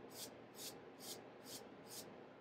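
Faint, even rubbing strokes, about two a second, as a small cleaning pad is wiped back and forth across a paperback book's cover to clean it.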